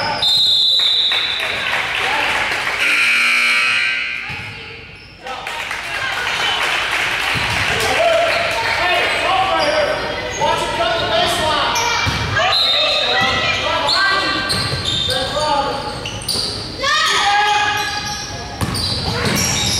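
Youth basketball game in a gym: a basketball bouncing on the hardwood court amid players' and spectators' voices, echoing in the large hall. A short, steady high whistle sounds just after the start, as players lie piled up on the floor after a scramble for the ball.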